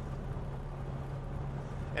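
1949 Mercury Monarch's 255 ci flathead V8, with dual exhaust through Cherry Bomb mufflers, giving a steady low drone mixed with road rumble, heard from inside the cabin while cruising at an even speed.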